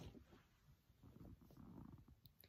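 Near silence: room tone with a faint, soft low rumble.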